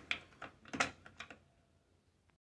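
Control knob of a Roper electric range being turned by hand, giving about six light clicks that stop about a second and a half in.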